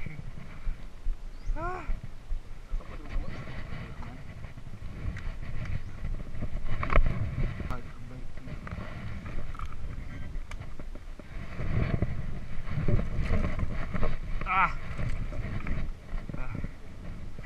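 Mountain bike ridden over a stony dirt trail, picked up by a chest-mounted camera: an uneven rumble and rattle of the tyres and frame over rocks, with sharp knocks, the loudest about seven seconds in. A short shout is heard near the end.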